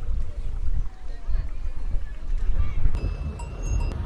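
Wind rumbling on the microphone, with faint voices behind it. About three seconds in, a short high ringing tone sounds for about a second.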